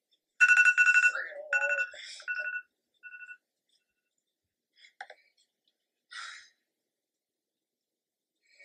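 Electronic alarm sound effect beeping in a rapid run of high two-tone pulses. It is loud for about two seconds, then trails off in a few fainter beeps. A couple of faint, brief rustles follow.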